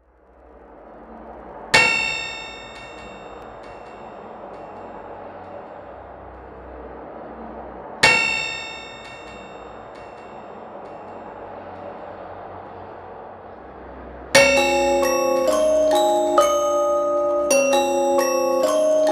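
Opening of an electronic avant-garde track: a hazy drone fades in from silence and two bell-like struck tones ring and decay, about six seconds apart. About fourteen seconds in, a louder repeating melody of glockenspiel-like mallet notes begins.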